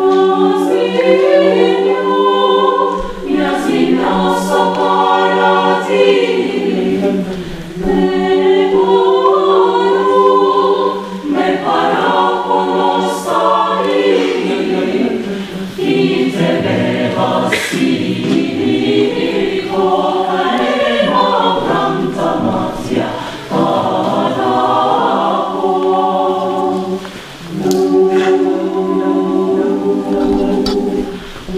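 Mixed choir of men's and women's voices singing a Greek song a cappella, in phrases with short breaths between them, over a held low note.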